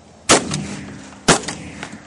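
Two shotgun shots about a second apart, each followed by a fading tail.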